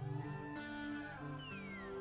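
Quiet live band music: held low notes under high sliding tones, with a long falling glide in the second half.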